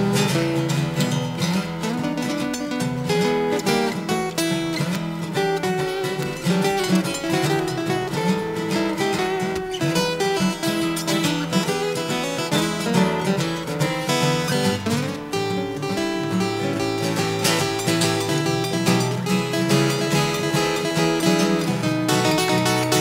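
Two acoustic guitars playing an up-tempo boogie-blues instrumental break: quick picked lead lines over a strummed rhythm.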